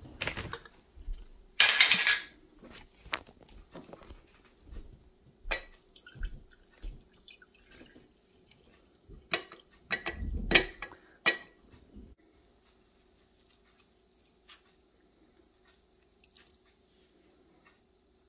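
Glass jars handled while straining an alcohol mushroom tincture through cheesecloth: a short loud rasp about two seconds in, scattered clinks and knocks, and a heavy thump as the soaked mushroom pieces are tipped into the cloth about ten seconds in. After that it goes quieter, with a few faint ticks.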